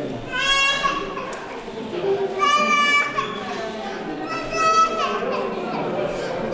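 A baby crying in three short, high wails about a second apart, over the murmur of a crowd talking.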